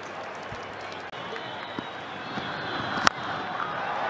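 Steady stadium crowd noise, with a single sharp crack of a cricket bat hitting the ball about three seconds in, a well-struck lofted shot. The crowd grows louder through the second half as the ball goes up.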